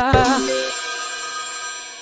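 The end of a novelty musical ringtone: a last wavering note in the first half-second, then a held final chord that fades steadily.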